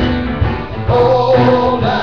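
Live blues band: a man's voice singing held notes over strummed acoustic guitar and grand piano keeping a steady rhythm.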